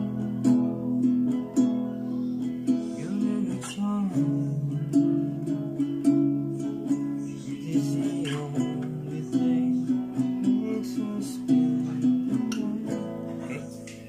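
Classical guitar played with the fingers, working through a repeating chord progression of E, C♯ minor, B9 and A9.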